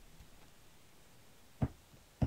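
A single short knock about one and a half seconds in, from a small wooden-handled alphabet rubber stamp being lifted off the planner page and set down on the wooden desk; otherwise quiet room tone.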